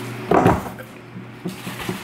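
Cardboard shipping box being lifted and handled, with one short scraping thump about half a second in and a few light knocks after it.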